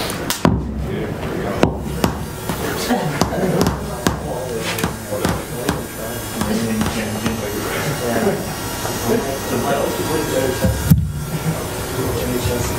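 Indistinct chatter of people in the room, with a few sharp knocks and clicks from handling cables and gear at a laptop.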